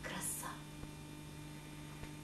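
Steady low electrical mains hum in the recording, with a brief faint hiss in the first half-second.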